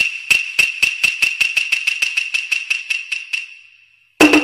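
A sound effect under a title slide: some twenty light metallic taps that come ever faster and fainter over a steady bright ring, like a small object bouncing or spinning down to rest. It fades out about three and a half seconds in.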